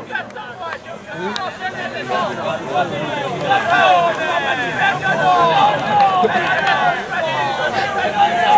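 Several people's voices overlapping: players and spectators around a football pitch talking and calling out at once, with no single clear speaker.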